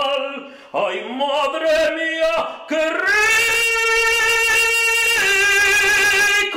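A man singing solo, in a lyrical, operatic style, his own song about vinegar: short sliding phrases at first, then a long held note from about three seconds in, stepping to a lower held note near the end. The tiled room gives the voice a church-like echo.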